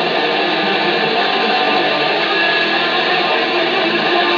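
Electric guitar played through heavy distortion, giving a loud, steady, dense wash of noise with little clear pitch.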